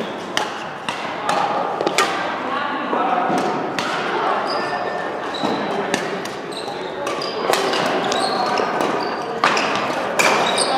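Badminton rackets hitting a shuttlecock: sharp cracks now and then, over background voices in a large indoor hall.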